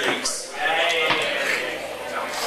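People's voices in a club, with one drawn-out call from about half a second in that lasts about a second.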